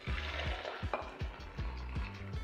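Liquid gelatin and sugar mixture pouring from a saucepan into a glass measuring jug, a soft splashing hiss strongest in the first half second. Background music with a steady beat plays underneath.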